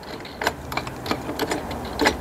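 Irregular light metallic clicks and taps of mounting hardware as a light fixture's bracket is being tightened by hand onto a metal pole.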